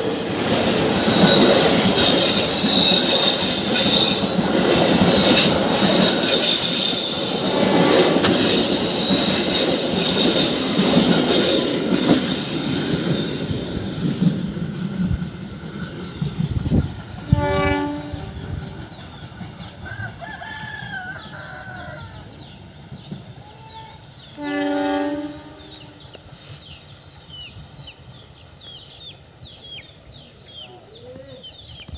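Pandanwangi passenger train's coaches passing close at speed, a loud steady rumble and clatter of wheels on rail. About halfway through the sound changes: a train approaching from a distance sounds its horn twice, a short blast and then a longer one of about a second, with a rooster crowing between the blasts.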